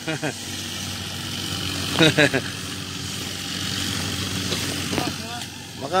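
A motor running steadily with an even low hum, with a short burst of a voice about two seconds in.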